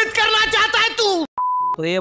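A man speaking sharply in Hindi is cut off mid-word, followed by a single steady electronic bleep tone about a third of a second long, of the kind used to censor a word. A different man's voice starts talking just after it.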